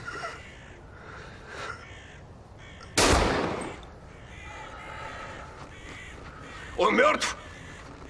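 A single loud pistol shot about three seconds in, ringing away over most of a second, then a crow cawing twice near the end.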